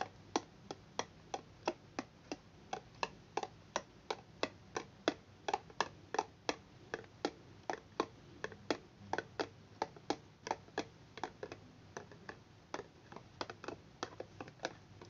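Plastic etching tray knocking on the tabletop as it is rocked back and forth in ferric chloride etchant: sharp clicks about three a second, slightly uneven, over a faint low hum.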